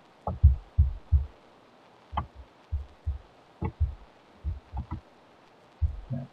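Computer mouse being clicked and handled on a desk: a string of soft, low thumps in irregular clusters, a few with a sharper click.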